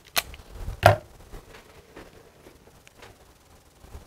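Two sharp clicks from a cigar lighter being handled, the second, about a second in, louder and with a dull knock to it.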